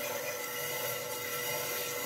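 Steady background hiss with a faint, even hum, with no distinct rubbing strokes or knocks.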